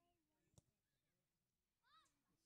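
Near silence: faint distant children's voices, with one high call near the end and a single sharp tick about half a second in.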